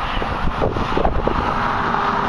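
Passing highway traffic, a steady rush of tyre and engine noise that swells in the second half, with wind rumbling on the microphone.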